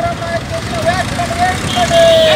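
A raised voice calling out in long, wavering held tones over the steady noise of passing road traffic.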